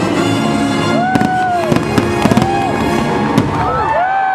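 Fireworks finale: a string of sharp cracks and bangs, starting about a second in, over the show's orchestral music, which is fading. Near the end, crowd voices rise and fall as cheering begins.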